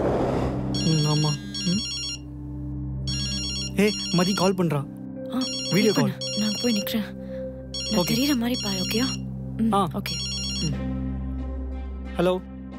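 Mobile phone ringtone for an incoming call, ringing in about five repeated bursts roughly two seconds apart, over background music, with a whoosh at the start.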